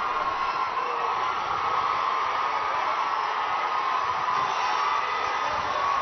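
A large crowd cheering and shouting: a steady, dense wash of many voices with no single voice standing out.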